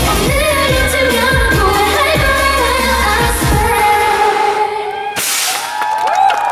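Live pop song with a woman singing over a beat and bass; the bass and beat stop about four seconds in as the song ends, leaving the voice. Near the end comes a short burst of noise.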